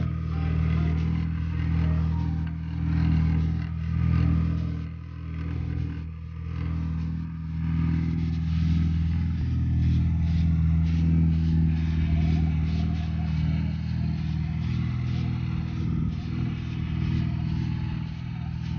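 ATV engine idling steadily, its revs rising and falling slightly.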